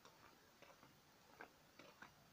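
Near silence, with faint light ticks about twice a second from footsteps while walking.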